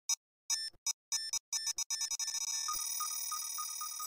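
Synthesized sci-fi computer beeps and tones. Short beeping bursts are separated by silences and come closer together, until about two seconds in they merge into a continuous high electronic tone with a pulsing beep under it.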